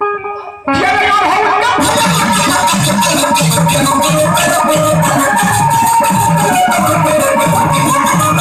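Live Bhojpuri devotional folk band starting up abruptly after a brief pause: hand drums beat a steady rhythm with a rattling percussion pulse and a melody instrument over it.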